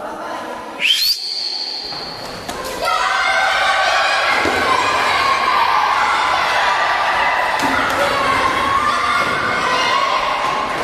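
A high, shrill whistle blast about a second in, held for under two seconds: the signal to start play. Then a gym full of children shouting and cheering, with thuds of running feet on the wooden floor.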